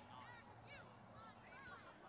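Near silence, with a few faint distant calls.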